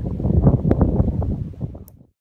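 Wind buffeting a handheld microphone as an uneven low rumble, with a few faint ticks. It fades away near the end.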